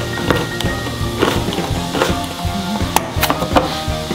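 Handheld can opener cranked around the rim of a steel tomato can, giving a few sharp irregular clicks, over background music.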